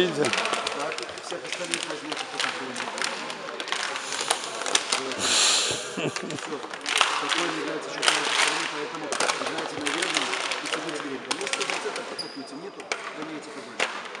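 Busy sports-hall noise: many voices talking at once under frequent sharp knocks of basketballs bouncing on the wooden court.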